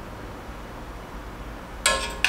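Low, steady kitchen room tone, then a single sharp metallic clink with a brief ring near the end, as of a utensil striking the cookware.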